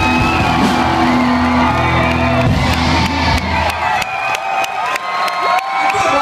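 A live blues-rock band holding a final chord with electric guitar, the music stopping abruptly about four seconds in, while the crowd cheers and whoops throughout.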